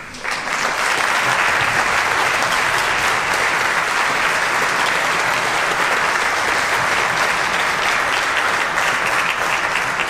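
Audience applauding: the clapping starts abruptly just after the start and holds steady and loud.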